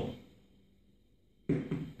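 A small ball dropped onto a shock-absorbing insole lands with a single sudden knock about one and a half seconds in, then rebounds a little: the insole does not fully damp the impact.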